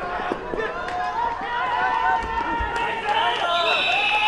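Several voices shouting at once during a running play, then a referee's whistle blows one long steady note near the end, signalling the play dead after the tackle.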